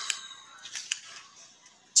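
Faint hiss of a video call's open microphones, with a few short, soft clicks about halfway through.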